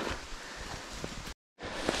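Rustling and brushing of ferns and undergrowth as a hiker pushes up a steep slope, with wind noise on the microphone. The sound cuts out completely for a moment about two-thirds of the way through.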